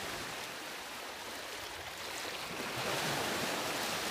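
Small sea waves breaking and washing up the shallow shore in a steady rush of surf, swelling a little in the second half.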